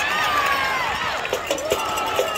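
Football stadium crowd shouting and cheering during a play, many voices overlapping.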